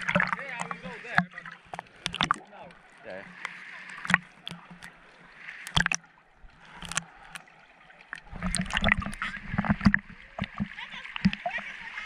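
Seawater sloshing and splashing around a camera as it bobs in and out of the water at the surface, with scattered clicks and knocks. Louder splashing comes about two-thirds of the way through.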